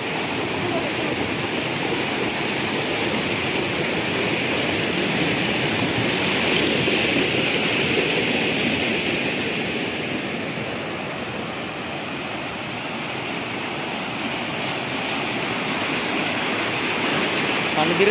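Water churning and foaming as it rushes through an open concrete channel of a drinking-water treatment plant: a steady rushing sound.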